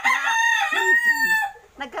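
A rooster crowing close by: one long, loud crow that ends about a second and a half in.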